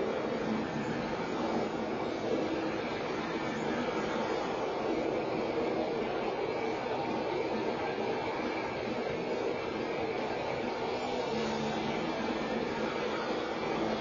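Steady rushing noise from a motion-simulator ride's film soundtrack, holding an even level throughout.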